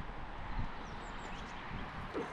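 Quiet outdoor background noise: a steady low rumble with a few faint, short high chirps about a second in.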